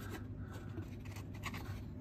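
Faint rubbing and rustling of a folded cardboard template being handled and pressed against the car's sheet-metal body, over a low steady hum.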